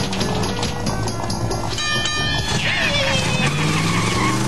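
Cartoon soundtrack: action music with a quick run of clattering sound effects, a brief high ringing tone about two seconds in, then wavering, falling glides.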